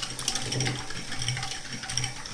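Electric hand mixer running steadily, its beaters whisking a thin liquid mix of milk, eggs, salt and sugar in a metal pot, with a steady low motor hum.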